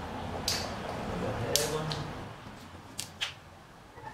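Thin kite tissue paper rustling as it is smoothed by hand on a cutting mat, with about five sharp clicks and taps, the loudest about a second and a half in, as a clear plastic ruler is set down on the paper.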